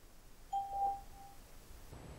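A single electronic beep from the Skype call testing service: a steady mid-pitched tone, about a second long, starting about half a second in. It marks the end of the recording period, just before the recorded message is played back.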